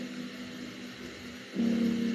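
Soft instrumental background music: a held chord slowly fading, then a new chord coming in about one and a half seconds in.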